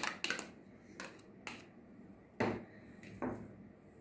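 A spoon knocking and scraping against small bowls as tomato sauce is spooned onto marinating chicken: several light knocks, the loudest about two and a half seconds in.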